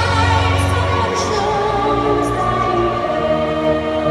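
Background music with a choir singing long held notes.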